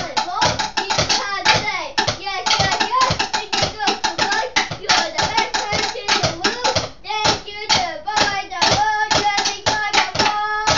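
Fast, uneven hand clapping or tapping, several hits a second, with a child's voice singing or chanting over it; the singing holds a steady note more strongly near the end.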